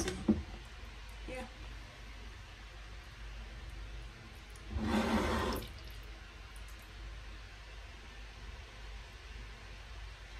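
Blended green juice draining through a plastic sieve into a glass bowl, with one short louder splash of liquid about five seconds in.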